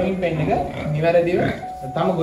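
A man speaking, with a short steady tone near the end.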